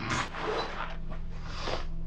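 Heavy breaths and gasps from men reacting in shock, three rushes of breath over a low steady hum.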